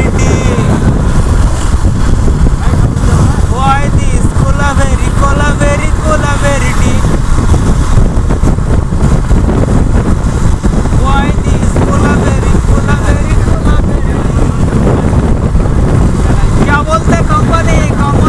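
A Yamaha motorcycle being ridden: a steady rush of wind buffeting the microphone over the running engine and road noise. Voices call out about four seconds in and again near the end.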